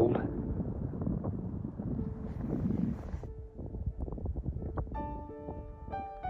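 Breeze buffeting the microphone, a low rumble that eases after about three seconds. Background music with held notes comes in near the end.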